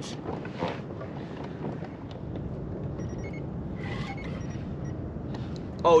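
Steady low rumble of wind on the microphone and water around a kayak, with a few faint ticks and brief thin high tones; a man's exclamation comes right at the end.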